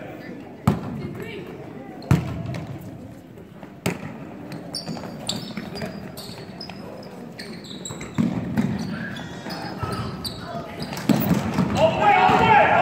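A basketball bouncing on a hardwood gym floor, three loud bounces in the first four seconds, followed by short high sneaker squeaks. Spectators' voices and shouts rise near the end.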